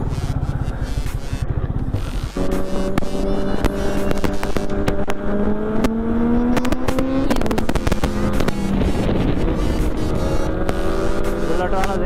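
Sport motorcycle engine, first a low idling rumble, then, after a sudden change about two seconds in, running at road speed with its pitch climbing slowly and dropping about seven seconds in as the rider changes up a gear. Wind buffets the microphone throughout.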